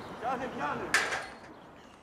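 A short, high, wavering human voice, then a single sharp knock about a second in.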